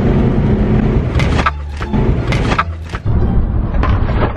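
Car cabin road and engine noise while driving, dropping noticeably about a second and a half in as the car slows, leaving a low engine hum. A few short, sharp noises come over it.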